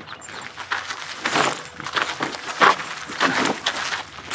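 Footsteps crunching on a gravel driveway: several people walking, an uneven run of crunches that gets louder in the second half.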